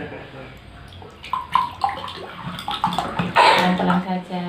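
Water pouring from a plastic bottle into a plastic bowl, splashing and gurgling in short spurts. A voice briefly near the end.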